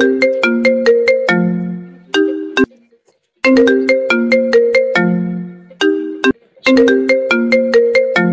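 Mobile phone ringing with a melodic ringtone: a short phrase of quick notes ending on a lower held note, repeating about every three and a half seconds as an incoming call.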